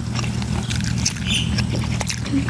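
Wet, irregular clicks and squelches of a large boiled eel being torn apart by hand, over a steady low hum.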